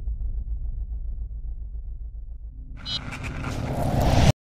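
Sound effects for an animated news-channel logo: a deep, pulsing rumble, then about three seconds in a whoosh that swells and is loudest at the end as the logo bursts into flame.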